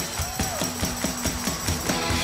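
Quick, even percussive beats, about five a second, played by hand as rhythm in live acoustic music.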